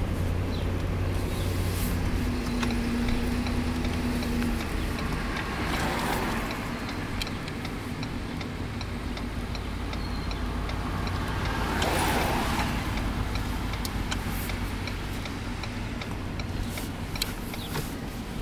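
Car engine and road noise heard from inside the cabin as it drives slowly, with another car passing the other way about twelve seconds in. A faint regular ticking, about two a second, runs through the second half.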